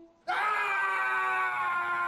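A man's long, loud yell that starts abruptly about a quarter second in and is held as one unbroken cry, its pitch sagging slightly.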